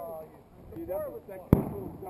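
A single sharp bang from an airsoft pyrotechnic grenade going off about one and a half seconds in, with a short echoing tail. Men's voices call out just before it.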